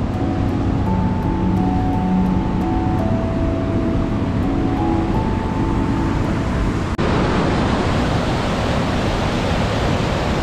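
Background music of held, slowly changing notes over a low rumble, then an abrupt cut about seven seconds in to the steady, loud rush of river water pouring over a dam weir.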